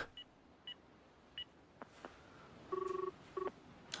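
Cordless telephone handset beeping as a number is dialled: three short, high keypad beeps in the first second and a half. Near the end comes a longer, lower two-pitch tone, followed by a short one.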